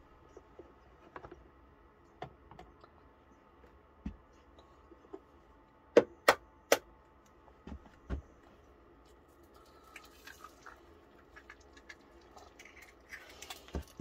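Light clicks and knocks from handling an electric omelette maker and an egg, with three sharp taps close together about halfway through as the egg is cracked.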